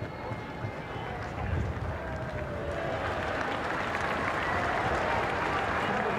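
Stadium crowd applauding, the noise building over the first couple of seconds and then holding, at the end of the first half after a penalty goal.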